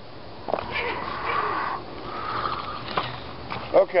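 Sniffing close to the microphone, with a few light clicks, then a man's voice near the end.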